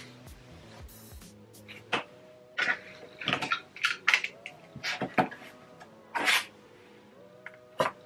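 A handful of short, scratchy strokes and rustles as printed cotton fabric is handled, smoothed under a ruler and cut with a Fiskars rotary cutter on a cutting mat, over soft background music.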